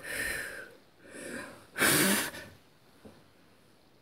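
Three short, breathy puffs of air from a person's mouth, the third the loudest, in the manner of a blowing or whooshing sound effect.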